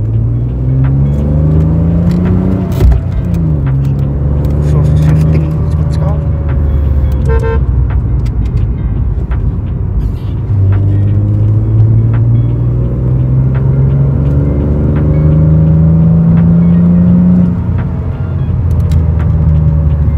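Stroked 3.0-litre BMW M52 inline-six in an E36, heard from inside the cabin, accelerating at part throttle: the revs climb, fall at an upshift about three seconds in, then settle. A second pull builds from about ten seconds, with the revs rising steadily to another upshift near the end.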